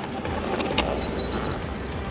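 Truck engine idling, a steady low rumble, with a few faint clicks and a thin high tone coming in about a second in.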